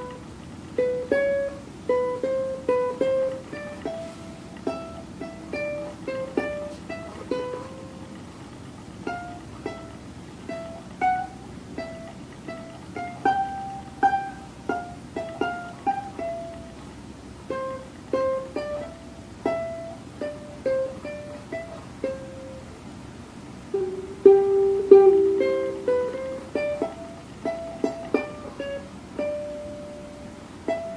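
A 21-inch soprano ukulele played as a melody of single plucked notes, about two or three a second, each ringing briefly and fading. The playing is louder for a couple of seconds around four-fifths of the way through.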